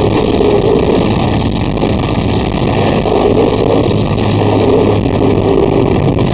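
Heavy metal band playing live, with distorted electric guitars and drums in a dense, steady wall of sound. A low bass note is held through the middle few seconds.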